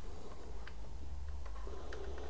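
Faint handling sounds of a robot vacuum's battery pack and its plug being fitted back into the compartment: a few light clicks over a low steady hum.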